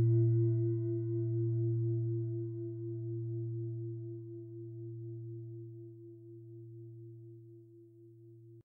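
A singing bowl rings out after a single strike, slowly fading. Its deep hum carries several higher overtones, one of which wavers gently.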